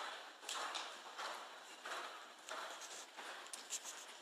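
Horse cantering on sand arena footing: faint, regular stride beats, about one stride every two-thirds of a second.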